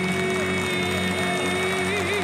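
A woman singing live into a microphone holds one long, steady note over band accompaniment, breaking back into vibrato right at the end.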